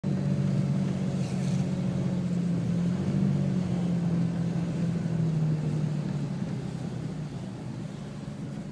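Car engine and road noise heard from inside the cabin as the car rolls slowly: a steady low hum that grows gradually quieter over the last few seconds.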